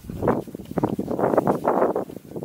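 Wind gusting on the camera microphone, in irregular bursts that grow denser and louder in the second second.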